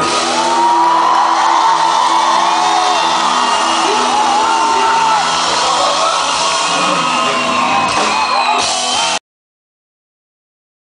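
Pop-rock band playing live with acoustic guitar, bass, drums and keyboards, holding out a long final chord while the crowd whoops and yells over it. The sound cuts off abruptly about nine seconds in.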